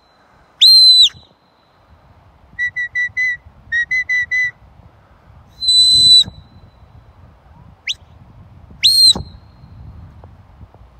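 A shepherd's whistled commands to a working sheepdog: a long high whistle about half a second in, then two quick runs of short lower pips around three and four seconds in, another long high whistle about six seconds in, a brief rising chirp near eight seconds, and a last high whistle that bends down at the end about nine seconds in.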